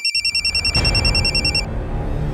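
Mobile phone ringtone: a fast-warbling electronic trill that cuts off about three-quarters of the way through, with low background music underneath.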